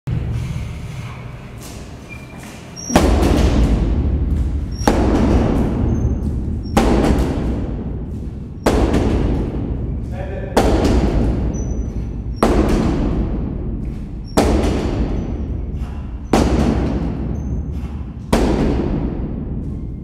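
A barbell loaded with 140 kg of bumper plates clanks once on each repetition of upright rows, starting about three seconds in: nine sharp clanks about two seconds apart, each ringing briefly.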